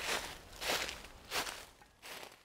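Footsteps crunching through dry fallen leaves on the forest floor: three steps about two-thirds of a second apart, each a little fainter than the last as the walker moves away.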